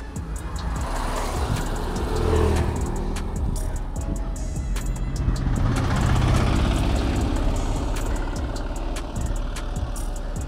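Motor vehicles passing close to a bicycle, their engine and tyre noise swelling and fading twice, the second time as a car overtakes about six seconds in. Background music plays underneath.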